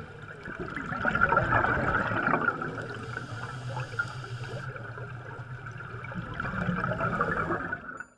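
Air bubbles rising through water, heard underwater as a steady bubbling rush that fades out at the very end.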